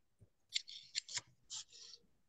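Stylus writing on a tablet screen: a run of short, faint scratching strokes as a word is handwritten.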